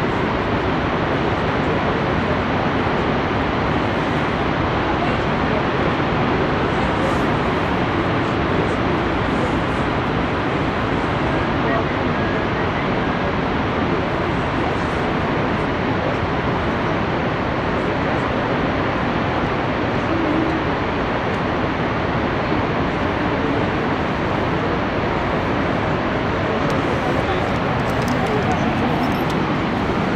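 Steady, loud rush of Niagara Falls' water pouring over the crest, a dense unbroken noise that never lets up.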